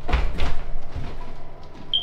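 A sliding closet door being pushed along its track, with two knocks in the first half second.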